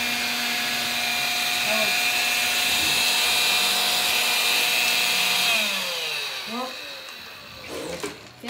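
Electrolux Ergorapido cordless stick vacuum running steadily with a high motor whine as it picks up cream of wheat from a linoleum floor. About five and a half seconds in it is switched off and the whine falls in pitch as the motor spins down.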